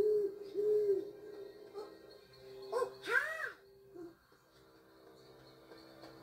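Eerie background music holding a sustained low note, over which an owl hoots: short hoots near the start and about a second in, and a longer, louder rising-and-falling hoot about three seconds in.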